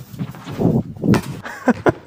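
Footsteps and thuds on a hardwood sports-hall floor as a volleyball serve is taken, with a run of short knocks and one sharp smack about a second in.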